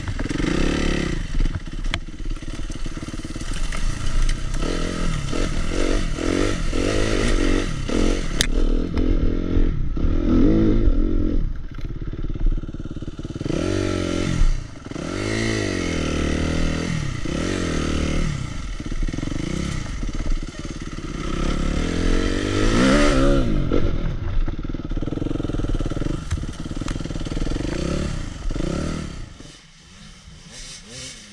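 Suzuki RM-Z250 four-stroke single-cylinder dirt bike engine heard from on the bike, revving up and down again and again as it climbs and turns on a dirt hill. It drops away sharply near the end.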